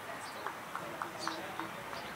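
A quick run of light, sharp taps, about four a second and slightly uneven, over faint distant voices and some high chirps.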